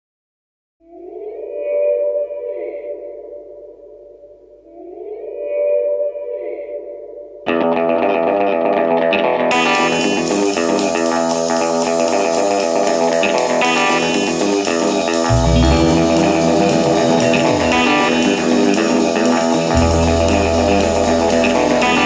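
Instrumental intro of a neo-rockabilly song: two swelling, effect-laden electric guitar tones, then the full band comes in about seven seconds in with guitar, drums and cymbals. The low end gets heavier about two-thirds of the way through.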